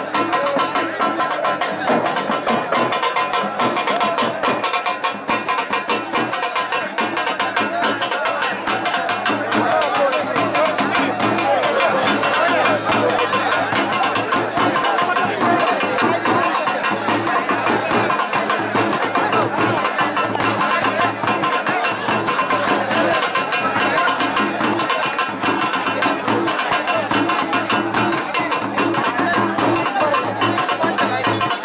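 Continuous fast drumming with music, with voices mixed in.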